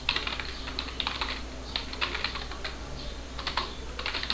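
Typing on a computer keyboard: an irregular run of key presses as a line of text is typed.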